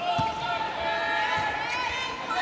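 Voices in a volleyball arena shouting and cheering in long held calls as the rally goes on, with a single thud of the volleyball a moment after the start.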